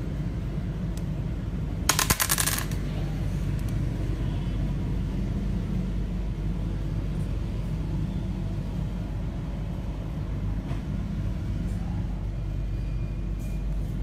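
Small stone carvings clicking together in a short rapid rattle about two seconds in as a hand picks among them, over a steady low background rumble.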